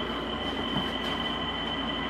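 Steady background noise with no speech: a low hum and hiss with a faint, thin high whine running through it.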